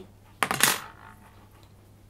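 A short, sharp metallic clink about half a second in, dying away with a faint ring: the metal splicing fish tool being handled or set down against the work while splicing Dyneema rope.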